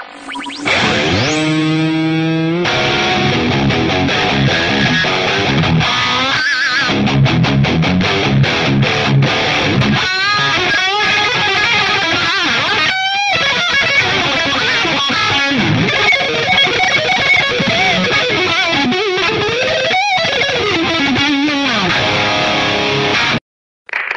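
Electric guitar played through an MXR Wild Overdrive pedal with its gain knob at maximum: heavily distorted metal riffing with held, wavering notes and squealing high harmonics. The playing stops abruptly near the end.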